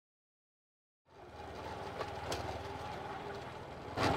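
Silence for about the first second, then a motorcycle engine running steadily at low speed as the bike rides closer.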